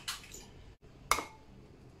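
Eggs being cracked on the rim of a ceramic bowl: a sharp tap at the start and another about a second in, the second with a short ring from the bowl. Between the taps the egg drops into the bowl.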